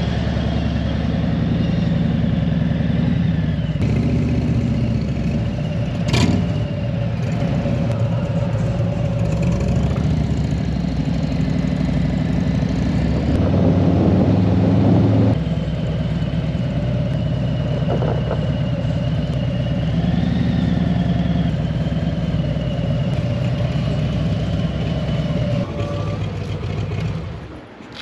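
Harley-Davidson Street Glide's V-twin engine running as the motorcycle rides along the road, with wind and road noise. About halfway through the engine grows louder, then drops off sharply, as with a gear change. One sharp click comes about a quarter of the way in, and the sound fades near the end.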